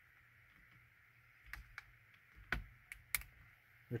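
A few faint, sharp plastic clicks in the second half as a flathead screwdriver pries up the orange locking retainers on the yellow airbag wiring connectors.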